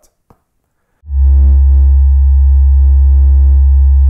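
Logo sting music: after about a second of near silence, a single loud synthesizer chord with heavy deep bass comes in and is held without change.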